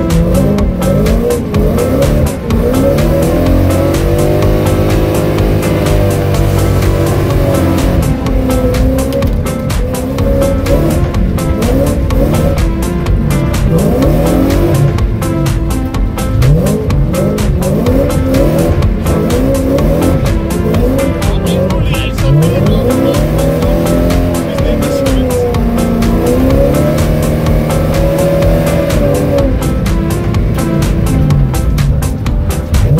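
Car engines revving up and falling again and again, with tyre squeal, as BMWs slide sideways through snowy bends.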